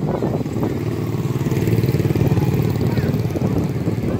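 Motorbike engines passing close by, the sound swelling in the middle and easing toward the end.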